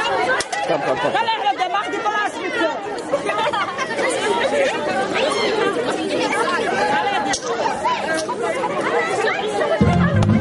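A crowd of many people talking at once, a steady chatter of overlapping voices.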